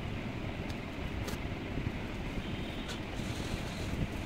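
Steady low background rumble with a few faint, light clicks.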